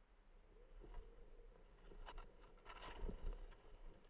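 Skis sliding through deep powder snow, faint, with a run of louder scrapes and knocks between about two and three seconds in.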